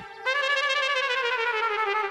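Comic trumpet sting from the show's background score: one held note with a wobble, sagging slowly in pitch.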